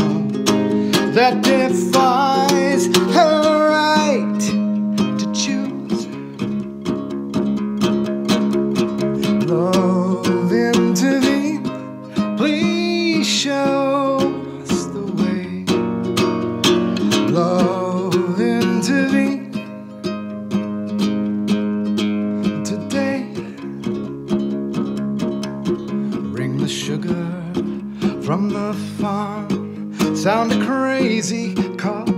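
Ukulele played live, an unbroken passage of strumming and picked notes with no words.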